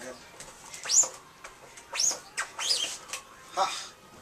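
A bird chirping: a few sharp, quickly rising chirps about a second apart, then a short vocal exclamation near the end.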